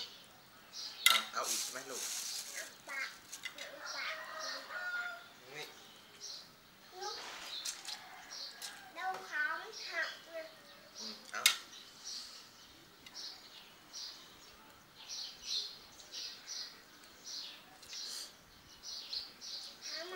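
Birds chirping in short repeated high calls, thickest in the second half, with quiet voices in places and two sharp clicks, one about a second in and one near the middle.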